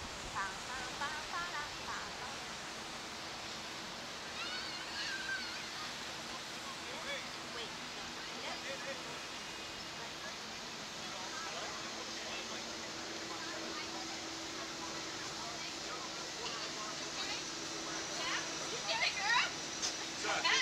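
Steady rushing wind noise on the ride-mounted camera's microphone as the slingshot capsule hangs and is lowered, with a faint low steady hum under it. Brief faint voices come through a few seconds in and again near the end.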